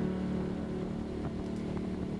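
Cruiser motorcycle engine running steadily at road speed, a constant hum with no change in pitch.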